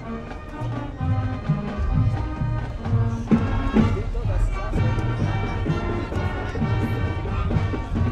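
High school marching band playing on the field: sustained brass chords over a low bass line that steps from note to note, with drums.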